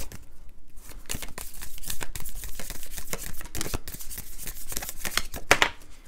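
A deck of round tarot cards being shuffled by hand: rapid, dense snapping and clicking of card stock, with a louder snap near the end.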